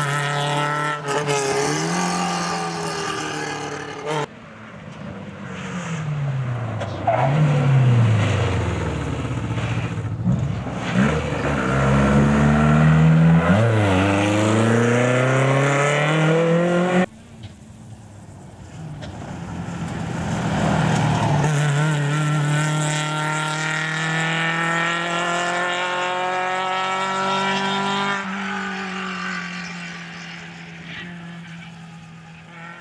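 Rally car engines at full throttle on a stage. A rear-engined Škoda revs up and down repeatedly as it shifts gear and brakes for bends, cut off abruptly a few times. Later another car is heard accelerating, its note climbing steadily for several seconds.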